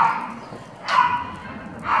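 A small dog giving two short, rough barks about a second apart.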